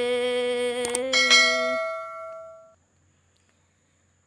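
A woman's voice holding one long sung note in Red Dao folk singing, ending about two seconds in. Over it come a couple of soft clicks and then a bell-like ding about a second in that rings out and fades, the sound effect of the subscribe-and-notification-bell overlay. The sound dies away by the middle.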